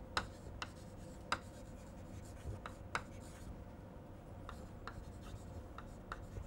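Chalk writing on a blackboard: short, sharp taps and scrapes of the chalk at irregular intervals as the letters are formed, with a faint steady hum beneath.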